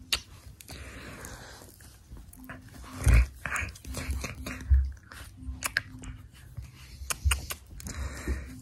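A pug breathing and making mouth noises close to the microphone as it nuzzles and mouths at a hand, with blanket rustling and several soft knocks.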